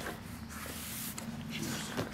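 Faint scratching of a chisel-tip marker's felt nib drawn across paper in a few light strokes, under a low background murmur of voices.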